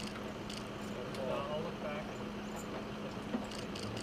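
Faint, indistinct voices over a steady low hum, with scattered light clicks.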